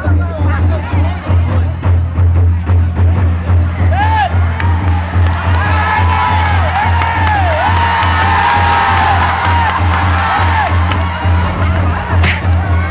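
Drums beating a steady, pulsing rhythm at a Vietnamese folk wrestling bout. About four seconds in, the crowd breaks into cheers and shouts that rise and fall, lasting until near the end as one wrestler is thrown and pinned on the mat.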